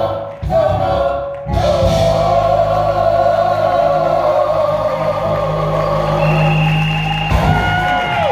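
A group of women singing gospel in harmony into microphones, amplified through the hall's speakers. After two short breaks early on, they hold one long chord for about six seconds.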